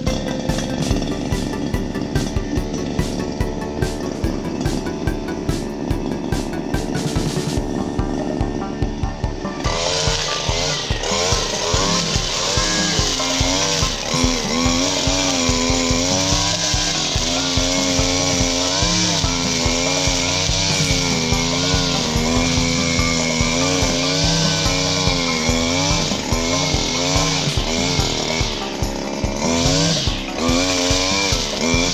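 Background music with a beat for about the first ten seconds. Then a homemade brush cutter's small petrol engine runs at high revs, its pitch wavering up and down as the metal blade cuts through brush and grass, with music still underneath.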